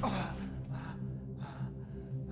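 A stabbed man's ragged, labored gasps, two short breaths a second or so apart, over a sustained, low, droning film-score chord.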